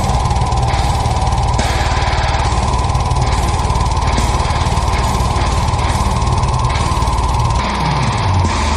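Slam metal: heavily distorted guitars over fast, dense drumming and cymbals, with a held high note running over the top.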